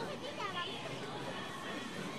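Murmured chatter of spectators in an indoor riding hall, with a horse neighing briefly, rising and falling, about half a second in.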